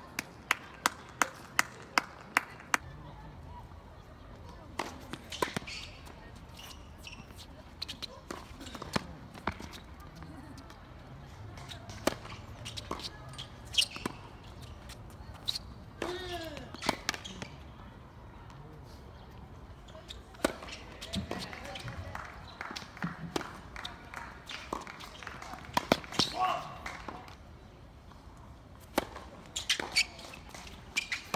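Tennis balls struck by rackets and bouncing on a hard court. A quick, even run of sharp ball taps comes in the first few seconds, then single hits spaced out through the rally, with players' voices calling out between them.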